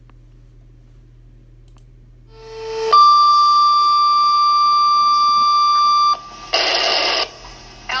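Fire dispatch radio paging tones for a firefighter's last call: a short lower tone, then a long steady higher tone for about three seconds that cuts off. A brief burst of radio static follows near the end.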